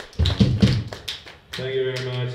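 A quick run of low thumps and taps, then a person's voice about one and a half seconds in.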